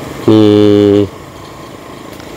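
A man's loud, long-held call on one steady pitch, lasting under a second near the start.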